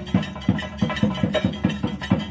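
Chenda drums beating a fast, even rhythm, about six strikes a second, as in the drumming that accompanies a theyyam.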